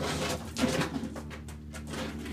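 A pigeon cooing softly in the background over a low steady hum.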